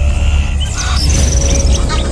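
Small birds chirping, with a rapid high trill about a second in, over a low steady musical drone.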